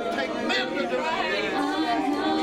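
Several voices praying aloud at once in a large room, overlapping into an indistinct chatter.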